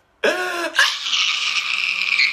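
A man crying hard: a short sob, then a long, hoarse wail from about a second in.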